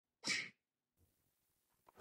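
One short, sharp breathy burst from a person about a quarter second in, lasting about a quarter second.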